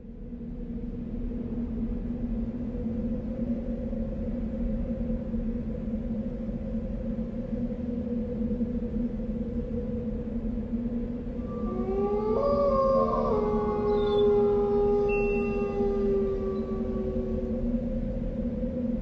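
Trailer sound design: a steady low drone with a higher held tone. About twelve seconds in, a siren-like wail slides up, holds and slowly sinks over it.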